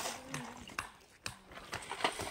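A few light, irregular knocks, with a brief faint voice near the start.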